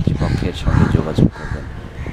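A man speaking in Bengali, with bird calls in the background.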